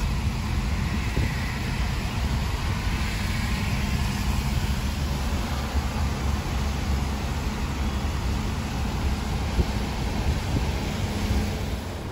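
Road noise heard inside a moving car on a wet highway: a steady low rumble of engine and tyres with a hiss of tyres on wet tarmac.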